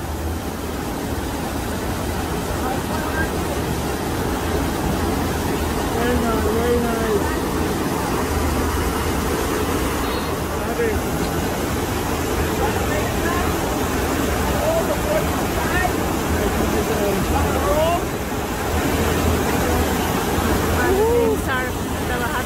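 Steady rushing of water pumped up the ramp of a FlowRider sheet-wave machine as a bodyboarder rides it, with a few faint voices calling in the background.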